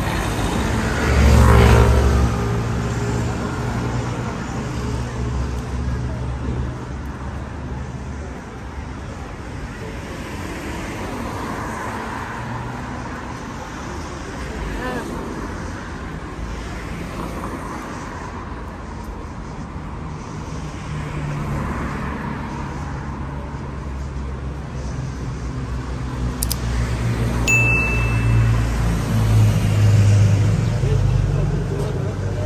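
Street traffic noise, with a city bus passing close by: its engine rumble is loudest about a second or two in, with a falling pitch. Steady road traffic continues, growing louder again near the end, with a brief high beep shortly before the end.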